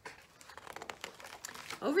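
A picture book's paper page being turned by hand, rustling and crackling with many small crackles for most of two seconds.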